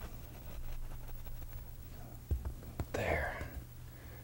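A paintbrush rubbed softly on canvas in short upward strokes, faint, with a couple of small ticks about two seconds in. A steady low hum runs underneath, and a breath-like rush comes about three seconds in.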